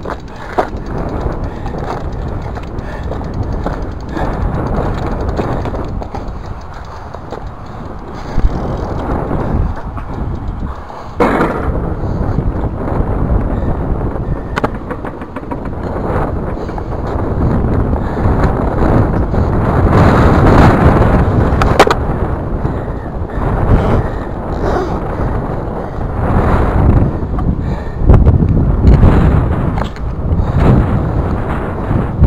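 Bicycle tyres rolling over loose gravel and dirt: a loud, steady noise that swells and eases as the bike rides. A few sharp knocks come along the way.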